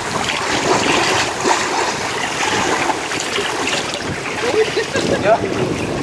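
Pool water splashing as swimmers kick mermaid monofin tails, a steady wash of water noise, with faint voices near the end.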